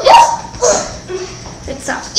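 Young girls' high-pitched voices in short wordless cries and laughter: two quick outbursts near the start, quieter in the middle, another starting near the end.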